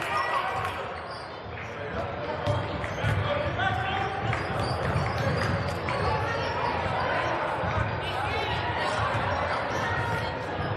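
Basketball game in a gymnasium: a basketball bouncing and thudding on the hardwood court, with short knocks, under players' and spectators' voices echoing through the hall.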